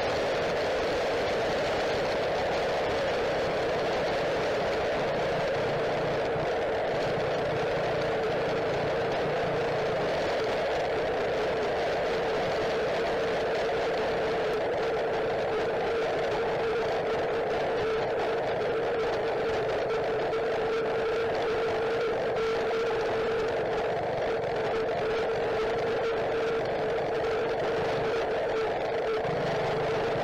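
Tuned go-kart engine running at a steady speed as the kart drives along, a constant drone that holds one even pitch throughout.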